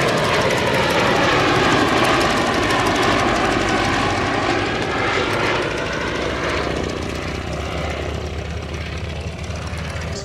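Fairey Swordfish biplane flying past, its Bristol Pegasus nine-cylinder radial engine and propeller droning steadily. The sound fades gradually over the last few seconds as the aircraft moves away.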